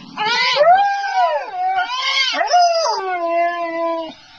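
Siberian husky howling in long wavering notes that rise and fall, sliding down near the end into a long, low held note.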